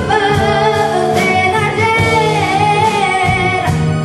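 A young girl singing a slow song into a handheld microphone, drawing out long notes with vibrato, backed by a live band with drum kit and keyboard.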